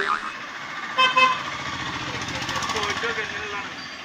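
Street traffic with a short vehicle horn toot about a second in, then a steady traffic din that slowly fades, with faint voices in it.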